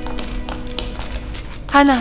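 Sad string music dying away as a woman's light footsteps and the rustle of a handbag are heard on a tiled floor; near the end a woman calls a name.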